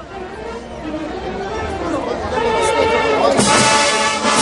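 Crowd chatter and murmuring voices, then a brass band with saxophones and tubas strikes up loudly about three seconds in.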